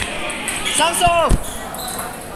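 Table tennis ball striking paddle and table, two sharp clicks about a second in, during a doubles rally. Spectators' voices shout over it, falling in pitch.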